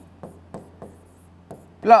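Stylus writing on the glass screen of an interactive whiteboard, heard as about four short, sharp taps spread over a second and a half.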